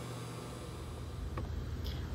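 Steady low hum with faint hiss and no distinct event, apart from a faint click about one and a half seconds in, after which the low rumble grows slightly.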